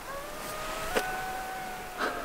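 Dingo howling in the distance: one long howl that rises in pitch and then holds steady. A single sharp click comes about halfway through.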